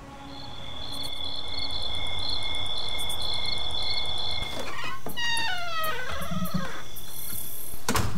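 Night-time chorus of crickets chirping steadily in high pulsing tones over a low hiss. A little past halfway, a louder pitched sound falls in steps for about two seconds.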